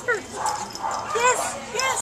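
A small dog yipping: a few short, high yips spread across the two seconds, with people talking in the background.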